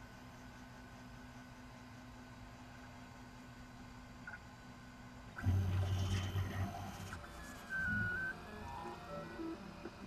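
Colido 3.0 FDM 3D printer: a faint steady hum, then about five seconds in its stepper motors start, whirring in short tones that step up and down in pitch as the print head moves off to begin printing.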